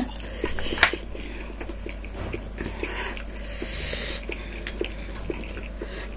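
Close-miked chewing and wet mouth sounds of people eating sushi and noodles, with many small clicks, a sharper click just under a second in, and a soft hiss around four seconds in.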